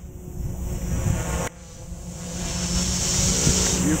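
Quadcopter's T-motor MT4006 brushless motors and propellers spinning up as it lifts off and hovers, a steady buzzing hum that grows louder. It drops suddenly about a second and a half in, then builds again.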